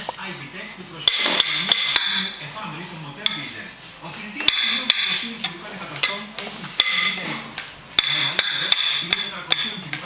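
Metal spoons clinking and scraping against plastic bowls, with sharp knocks at irregular intervals, several of them ringing briefly.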